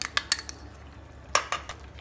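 A spoon and spatula clinking and knocking against a bowl and a cooking pan while fresh cream is scraped into a curry gravy and stirred in. There are a few quick sharp clicks at first and one louder knock a little past the middle.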